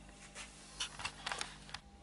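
A few faint clicks and light scrapes of hand tools being handled, a metal square and pencil set against the wooden blank.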